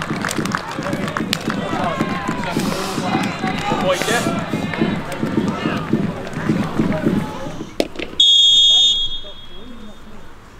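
Crowd voices and scattered claps and shouts, then about eight seconds in a referee's pea whistle blows one sharp blast, the loudest sound here, signalling the start of a minute's silence.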